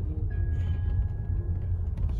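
Steady low rumble of a car's engine and road noise heard from inside the cabin as the car moves slowly.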